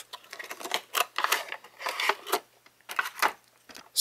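Clear plastic packaging tray crinkling and rustling in several short, irregular bursts as it is slid out of its cardboard box and handled.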